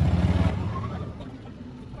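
Golf cart riding across the grass, a low rumble that fades away about half a second in.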